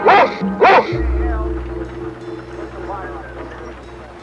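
Large black dog barking twice in quick succession near the start, over the episode's background music. About a second in, a low steady drone begins and slowly fades.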